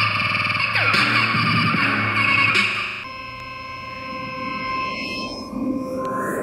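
Electronic synthesizer music from iPad synth apps. Dense layered tones with falling pitch sweeps about every second and a half thin out about halfway to a few held tones, and a rising sweep starts near the end.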